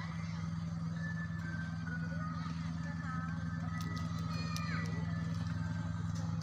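Steady low engine drone that holds an even pitch throughout, with faint voices and chirps above it.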